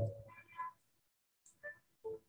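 The end of a spoken word, then a short high-pitched call about half a second in, with faint small sounds near the end.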